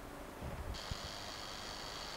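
A few dull low bumps of a handheld camcorder being handled. About three-quarters of a second in, a steady high-pitched hiss starts suddenly and carries on.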